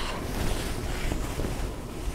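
Cotton quilt fabric rustling and brushing as pieced sections are handled and smoothed on a table.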